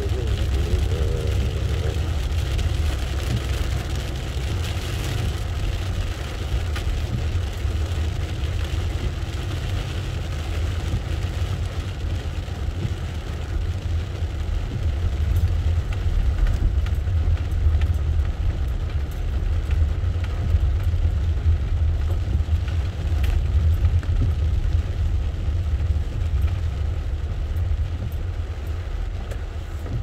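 Car driving on a rain-soaked road, heard from inside the cabin: a steady low rumble of engine and tyres on wet tarmac, with rain striking the windshield.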